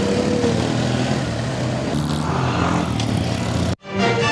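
Roadside traffic noise, with a motor vehicle's engine running steadily. It cuts off suddenly near the end.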